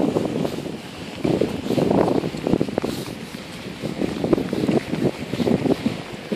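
Wind buffeting the microphone in irregular gusts, with a few faint clicks.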